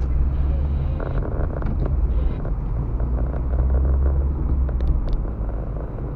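A car's engine and tyre noise heard from inside the cabin while driving: a steady low drone with road hiss that grows a little fuller about a second in.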